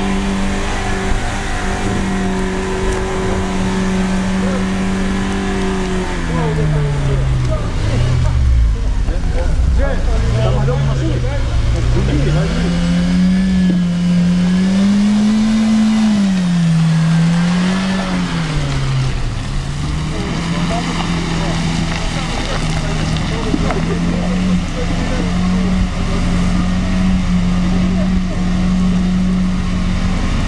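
An SUV engine working hard in deep mud: revs held high and steady, then falling away about seven seconds in, then rising and falling over and over as the car fights for grip, then held at a steady high drone for the last ten seconds.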